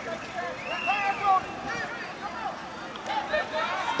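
Scattered distant voices calling out and chattering across an open football field, over a steady background murmur; no voice is close.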